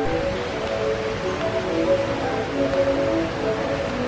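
Balinese gamelan metallophone playing a quiet run of ringing notes, one after another, over a steady hiss.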